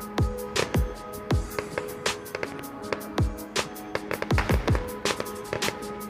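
Music with held sustained notes, over a string of sharp, irregularly spaced bangs from an aerial fireworks display, some of them with a deep falling thump.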